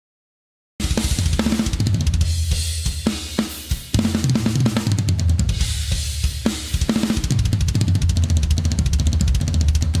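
Drum solo on a full kit with Meinl cymbals, starting about a second in: a fast, continuous roll of double bass drum strokes from Axis direct-drive pedals under snare and tom hits and cymbal crashes. The kick drum is triggered, so each stroke sounds clean and defined.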